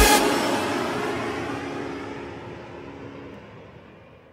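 End of a hip-hop track fading out: the beat stops right at the start and the remaining music dies away steadily.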